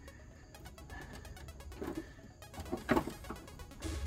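Faint background music.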